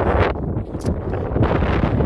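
Wind buffeting a handheld camera's microphone: an uneven low rumble, with a short sharp click a little under halfway through.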